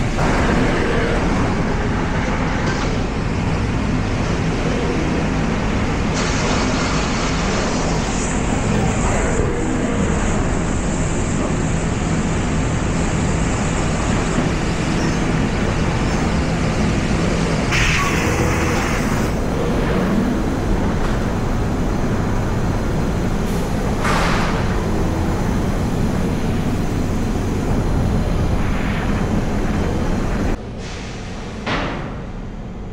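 Laser cutting machine running while it cuts aluminium sheet: a steady mechanical hum under a broad hiss, with short louder hisses a little past halfway and again a few seconds later.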